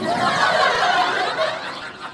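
Studio audience laughing, loudest at the start and dying away over about two seconds.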